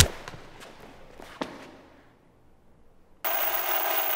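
A sharp, loud hit at the very start, a blow struck at a masked man's head, with a reverberant tail and a few fainter knocks over the next second and a half. After a moment of near silence, harsh static hiss cuts in suddenly about three seconds in and runs on, the sound of a video-glitch effect.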